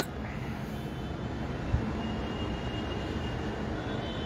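Steady low rumble of background noise, with a single short knock a little before two seconds in.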